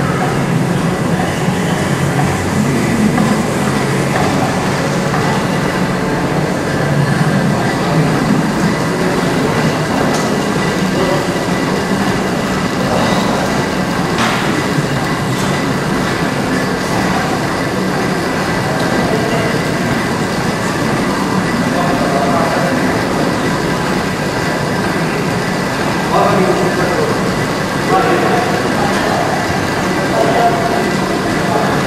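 Busy gym ambience: a loud, steady rumbling noise, with indistinct voices in the mix.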